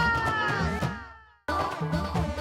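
Theme music of a TV serial: a falling, gliding tone fades away over about a second and a half, there is a short moment of silence, and then the music cuts back in.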